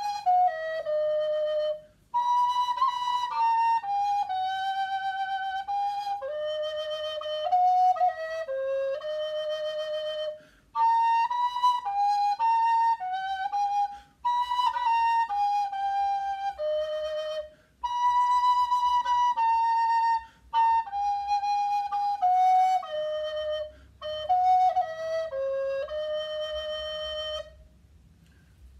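Baroque alto recorder played with a 3D-printed replica of the Bate Collection Bressan alto body, pitched at A=403, playing a melody one clear note at a time. It comes in phrases of a few seconds with short breaks for breath between them.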